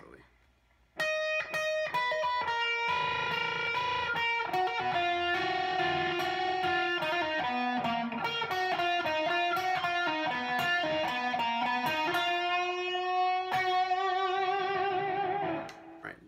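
Electric guitar lead playing a slow melodic lick on the E-flat Hirajoshi scale, single notes with bends and hammer-ons, starting about a second in and ending on a held note with vibrato.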